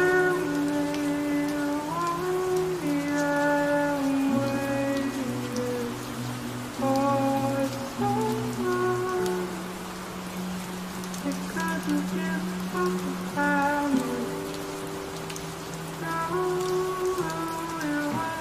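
Steady rain falling on a hard surface, with a soft, slow melody layered over it: held and gliding notes with no beat or bass.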